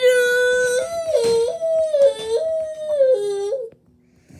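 A child's voice holding one long wailing note, then switching back and forth between a higher and a lower pitch about every half second, like a two-tone siren. It stops abruptly shortly before the end.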